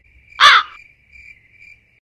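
A single loud, short animal call about half a second in, with a harsh arching pitch, over a faint steady high-pitched chirring like an insect.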